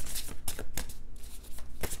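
A tarot deck being shuffled by hand: a rapid, irregular run of card snaps and flicks, thinning briefly a little past the middle.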